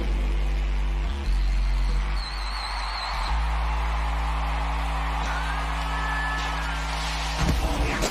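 Low sustained chords from the concert sound system, moving to a new chord about a second in and again about three seconds in, over a large stadium crowd cheering and screaming. Near the end the held chord stops and sharp beats come in.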